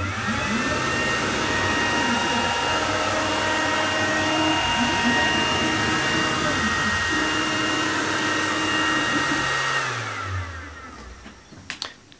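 xTool D1 Pro diode laser engraver tracing a low-power border test: the gantry's stepper motors whine in steady tones that slide up and down in pitch as the head speeds up and slows, over a steady fan hiss. The sound dies away about ten seconds in as the job finishes.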